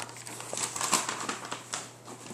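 Gift-wrapping paper crinkling and rustling in a run of short, irregular crackles as a wrapped present is handled and unwrapped.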